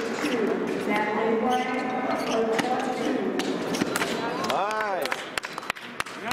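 Voices calling out in a large echoing hall, then one short rising-and-falling squeak of a fencing shoe sole on the piste about three-quarters of the way in, followed by several sharp taps of footsteps on the metal strip.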